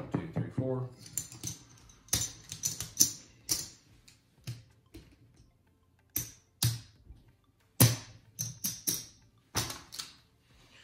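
Casino chips clicking against one another as they are picked up, stacked and set down on a felt craps layout. The clacks come irregularly, some sharp and loud, a few in quick runs.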